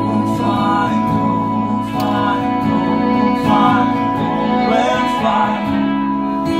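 Live acoustic country band playing: strummed acoustic guitars and a fiddle holding long notes, with voices singing.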